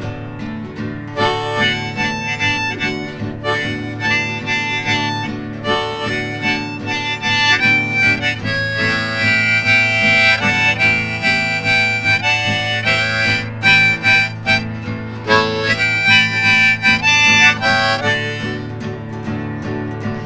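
Harmonica played in a neck rack, carrying the melody of an instrumental break over a strummed Yamaha acoustic guitar, with some long held notes in the middle.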